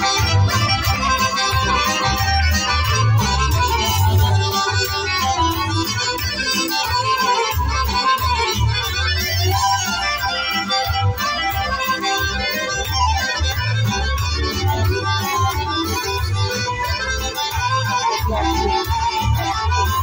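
Accordion playing a lively Serbian folk tune over an accompaniment with a steady low beat: the instrumental introduction before the vocal comes in.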